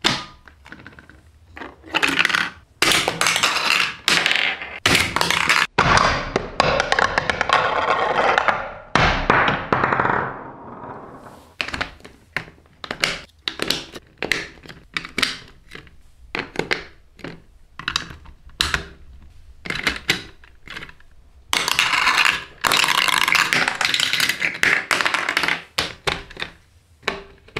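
Hard plastic VTech marble run pieces being handled and pressed together onto a grid baseplate: many sharp clicks and knocks, with several longer stretches of plastic rattling and scraping.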